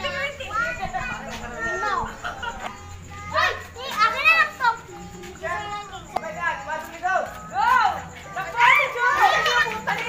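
A group of children shouting and calling out excitedly, their voices overlapping in rising and falling cries.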